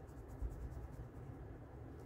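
Faint scratching of a felt-tip marker being rubbed back and forth over soft modeling clay to color it.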